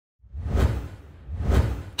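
Two whoosh sound effects from an animated logo intro, one after the other, each swelling and fading with a low rumble beneath.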